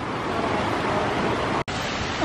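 Shallow rocky creek flowing: a steady wash of water noise, which cuts out for an instant about a second and a half in.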